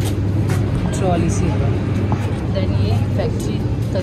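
Tea-processing machinery running with a steady low hum, with faint voices talking over it.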